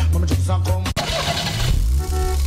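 Music from a radio promo that cuts off just before a second in, followed by a car engine starting and revving as a sound effect for an auto repair advertisement.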